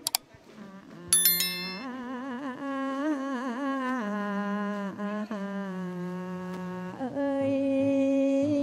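A woman singing a slow, ornamented tổ tôm điếm verse through a microphone, long held notes wavering in vibrato. It is preceded by two quick clicks at the very start and a sharp ringing strike about a second in.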